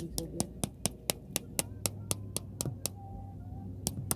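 A quick, uneven run of sharp clicks, about four or five a second, that stops about three seconds in and starts again just before the end, over a low steady hum.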